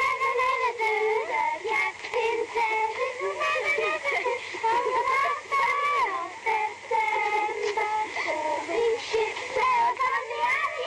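Background music: a song with high singing voices, the melody gliding and wavering throughout.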